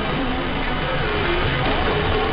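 Distant mediumwave AM broadcast on 774 kHz received through a web SDR: music, thin and narrow-band, heard through a steady wash of static and interference.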